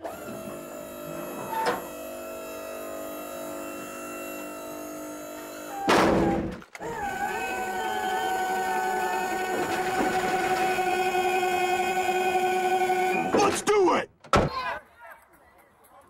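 Electric wheelchair lift on a van running, a cartoon sound effect: a steady mechanical hum, a thunk about six seconds in, then a louder steady whine with a slight waver that stops about two seconds before the end.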